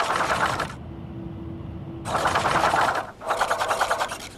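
A TV graphic-transition sound effect: a fast, even, mechanical-sounding rattle in bursts. One burst comes at the start, then a short steady low hum, then two more bursts back to back in the second half.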